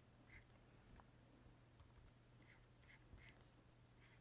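Near silence: room tone with a low steady hum and a few faint, scattered clicks.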